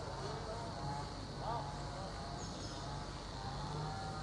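Steady low hum of a distant farm tractor engine running, with faint far-off voices.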